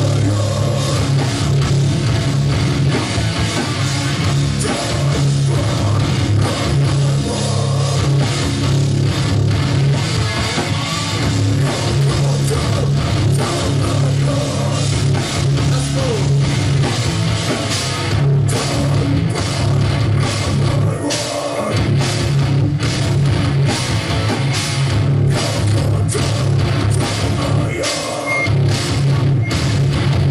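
A hardcore punk band playing live at full volume: distorted electric guitars, bass and a drum kit together, with drum hits cutting through more sharply in the second half.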